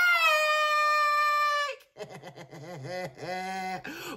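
A man's voice belting one long, high, wordless note, held for about two seconds and sagging slightly in pitch. After a brief break comes a quieter melodic passage with a steady low tone beneath it.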